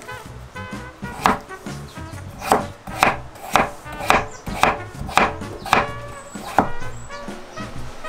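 Kitchen knife cutting a raw peeled potato on a wooden cutting board: about ten sharp chops, roughly two a second, stopping shortly before the end.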